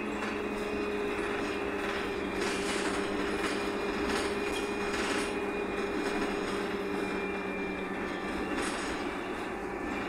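Cabin noise inside a Wright Pulsar 2 single-deck bus on a VDL SB200 chassis while it is under way: the engine and drivetrain run steadily with a whine that sinks slightly in pitch, and the body rattles briefly several times.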